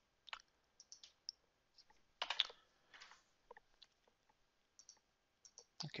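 Faint, scattered computer mouse clicks, about a dozen short clicks spread through a near-quiet room, with one slightly louder short noise about two seconds in.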